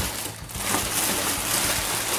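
Plastic air-pillow packing material rustling and crinkling as it is pulled out of a cardboard shipping box.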